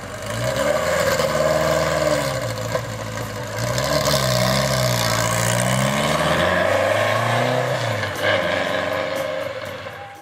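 Classic Alpine A110's rear-mounted four-cylinder engine, breathing through a Devil aftermarket exhaust, pulling away at low speed: the revs rise and fall several times as it moves off, and the sound eases off near the end.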